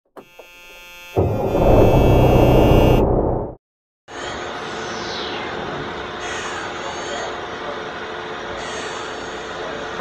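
A short intro sting of music with a loud rushing sound effect that cuts off sharply about three and a half seconds in. After a brief silence comes a steady machine-shop hum.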